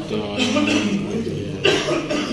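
A cough, a single short burst about one and a half seconds in, over voices talking.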